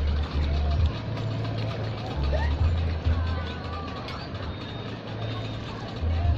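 Gusty wind rumbling on the microphone, heaviest in the first second and again from about two to three and a half seconds in, with faint voices in the background.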